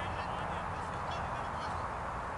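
Faint bird calls over steady open-air background noise.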